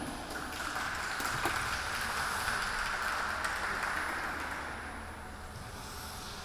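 Audience applauding, dying away over the last couple of seconds.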